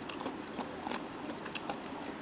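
Chewing a mouthful of coated fried chicken close to a lapel microphone: faint, irregular small crunches and mouth clicks.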